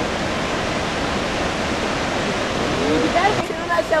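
Steady rushing of a waterfall, with a person starting to speak near the end.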